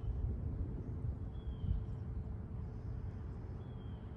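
Faint bird chirps, short falling whistles heard about a second and a half in and again near the end, over a low steady rumble of outdoor background noise.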